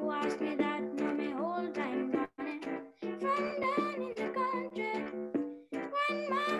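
A child singing to his own electronic keyboard accompaniment: held chords under a high, gliding voice that holds its notes. It is heard through a video call, and the sound cuts out briefly twice.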